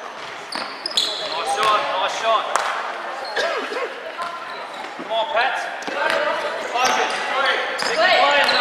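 A basketball bouncing on a hardwood gym floor, with sneakers squeaking in short high chirps as players scramble and run.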